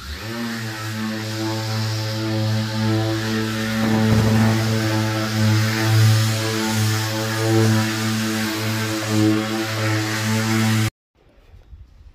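Mirka Leros long-reach electric drywall sander running while it sands a drywall wall: a steady, loud motor hum that comes up to speed in the first half second and cuts off abruptly near the end.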